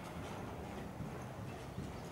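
A horse's hoofbeats as it trots on the soft footing of an indoor arena: a run of dull, irregular thuds.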